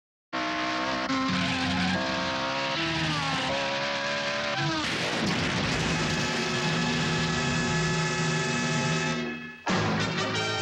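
A car engine driven hard, its pitch stepping and sliding through several gear changes, then giving way to a noisy rush. It fades out near the end and a loud burst of music cuts in.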